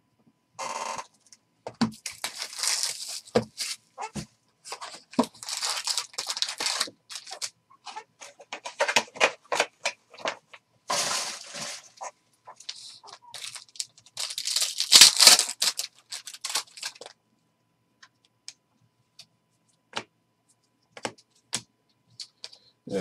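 Trading-card pack wrappers crinkling and tearing as packs are ripped open and the cards handled. The sound comes in a run of short irregular bursts and is loudest about fifteen seconds in. After that only a few light clicks remain.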